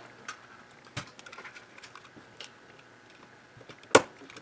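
Small screwdriver prying at the plastic cover of a Lutron Maestro dimmer switch: a few faint, scattered clicks and scrapes, then one sharp click near the end.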